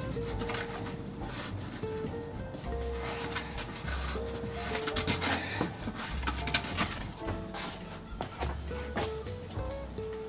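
A wooden stick scraping and rubbing in irregular strokes as it rams glass wool down an old brick chimney flue, with background music playing.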